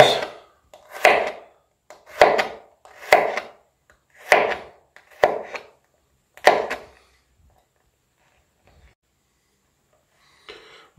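Chef's knife slicing garlic cloves on a plastic cutting board: six separate cuts, each with a sharp tap of the blade, about once a second, stopping about seven seconds in.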